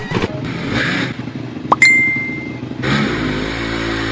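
Motorcycle engine sound effect running and revving, with a sharp click and a short high ding about two seconds in; from about three seconds the engine settles into a steady, even note.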